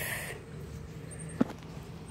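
Faint handling noise from the camera and leaves being moved, with a single sharp click about one and a half seconds in.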